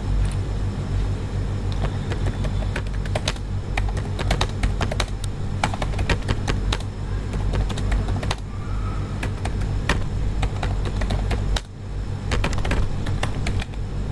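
Typing on a computer keyboard: irregular runs of key clicks with a brief pause about twelve seconds in, over a steady low hum.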